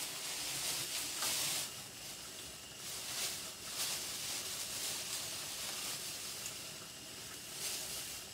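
Food frying in a pan, a steady sizzling hiss that swells a few times.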